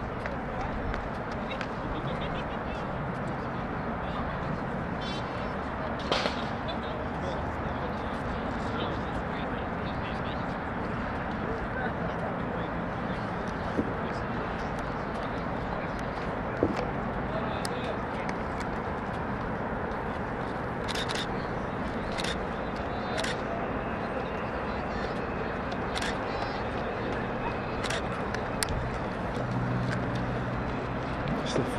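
Outdoor ambience at an athletics track: distant voices over steady background noise, with a few brief sharp clicks or taps scattered through.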